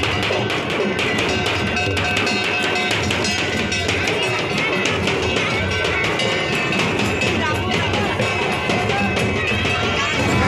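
Folk drumming on slung barrel-shaped hand drums, a dense and steady beat with no pause, mixed with voices.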